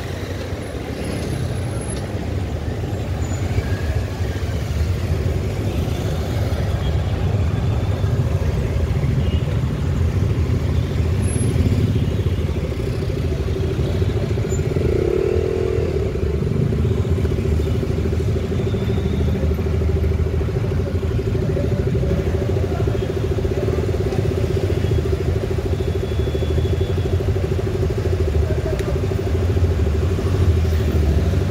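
Congested city road traffic: motorcycle and car engines running close by in slow-moving traffic, a steady low rumble. A steady humming tone joins about halfway through.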